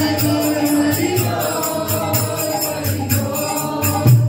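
Group devotional chanting (kirtan), a lead voice on a microphone carrying a gliding melody with the crowd joining in, over a fast, steady jingling beat of small metal percussion.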